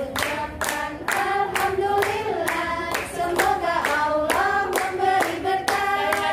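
A group of women singing together and clapping in time, about two claps a second.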